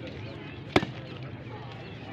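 One sharp smack of a ball being hit, about three-quarters of a second in, over faint background voices.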